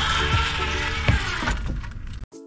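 Background music with a steady beat, over the rushing whir of a zip-line trolley running along its steel cable, which fades out as the ride slows near the end.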